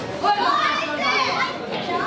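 Ringside voices calling out over one another, several at once and fairly high-pitched: spectators and corners shouting encouragement and instructions to the fighters.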